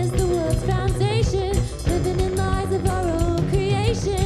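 Live rock band playing: electric guitar, electric bass and drum kit, with a female lead voice singing a wavering, vibrato-laden melody over them.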